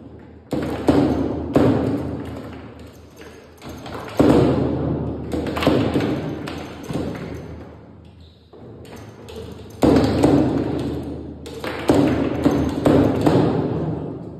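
Foosball table in play: sharp knocks as the hard plastic ball is struck by the figures and the rods and cracks against the table's walls, about a dozen strikes in quick clusters. Each knock rings on with a hollow, room-filled echo.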